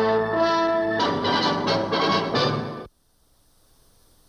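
Closing theme music of a 1960s TV sitcom: sustained chords, then a few rhythmic accented strikes, cut off abruptly about three seconds in. Faint hiss follows.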